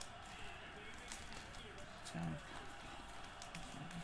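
Foil-wrapped trading card packs crinkling and ticking faintly as a stack of them is fanned through by hand, one pack after another.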